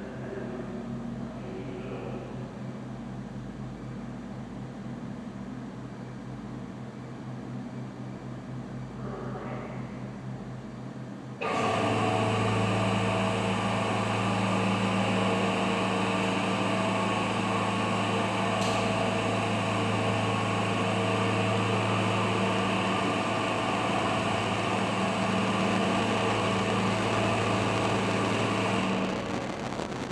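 Drive mechanism of an IL 60 PL cobalt-60 panoramic irradiator starting suddenly about a third of the way in. It gives a steady machine hum, a low drone with several steady tones above it, as the source is raised out of its lead shielding, and it stops near the end. Before it starts, only a fainter steady hum is heard.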